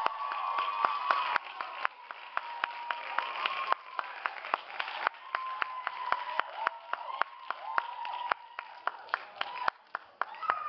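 Audience applauding at the end of a song, with one set of sharp, rapid claps close by standing out over the crowd, and voices cheering.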